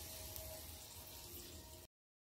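Faint, steady sizzling of sabudana and potatoes frying in ghee in a kadhai, cutting off to dead silence near the end.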